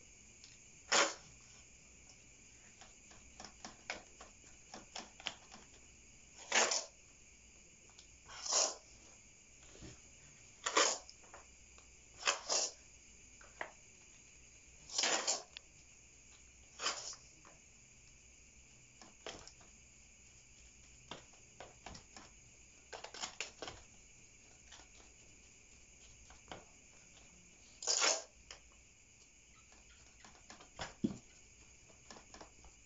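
A metal spoon scooping moist potting mix from a basin and tipping it into a plastic pot: about a dozen short scrapes and rustles at irregular intervals, over a faint steady high hum.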